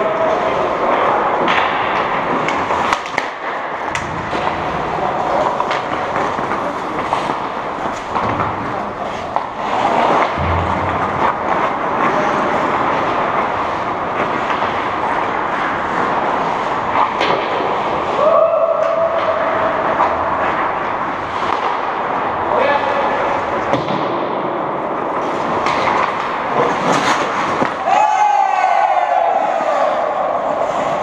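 Ice hockey play on an indoor rink: a steady mix of skates on ice, with repeated knocks of sticks and puck and players' voices. The play comes close near the end.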